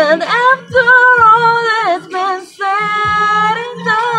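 A woman singing a slow ballad line, holding two long notes with vibrato.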